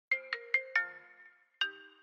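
Phone ringtone playing a short melody of bright, quickly fading chime notes: four quick notes, then one more after a short pause. It signals an incoming call.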